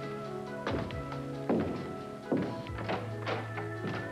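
Background music: sustained chords held under a handful of sharp struck notes that fall away in pitch.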